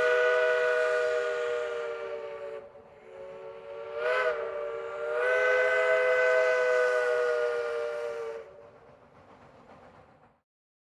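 Narrow-gauge steam locomotive's whistle blowing a chord of several tones: a blast that ends between two and three seconds in, a short toot about four seconds in, then a long blast of about three seconds that stops near the end, with a faint tail.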